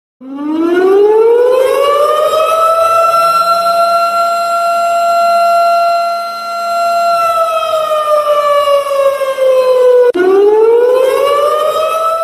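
Siren wailing. Its pitch rises over about two seconds, holds steady, then slides down, breaks off about ten seconds in and starts rising again. It is the alarm signalling an earthquake drill.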